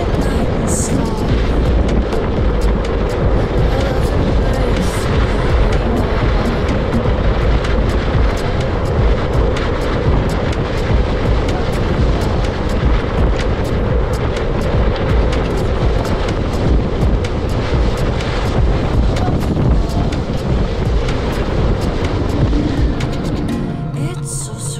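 Steady rushing wind noise on the camera microphone and a low rumble from a kite buggy's wheels rolling fast over hard sand, with background music underneath.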